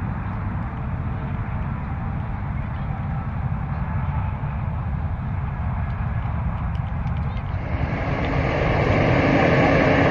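Wind blowing on the microphone in open country: a steady, rumbling rush with no pitch to it, which grows louder and brighter about eight seconds in.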